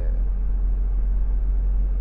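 Steady low drone of a Honda S660 cruising, heard inside its cabin: the mid-mounted turbocharged three-cylinder engine together with tyre and road noise.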